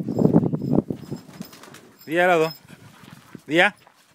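Dogs growling in a brief scuffle during about the first second, followed by two short, wavering vocal calls.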